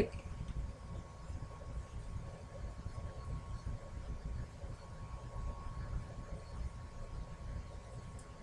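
Quiet room tone: a steady low rumble with a faint steady high whine, and no distinct handling sounds.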